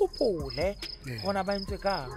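Crickets chirping in an even rhythm, about three chirps a second, under a man talking.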